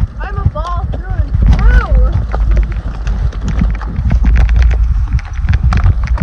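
Horses walking on a dirt trail, hooves clopping in quick irregular clicks, over a heavy low rumble on the microphone. A person's voice is heard in the first two seconds.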